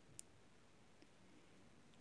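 Near silence: room tone, with one faint short click near the start and a fainter one about halfway.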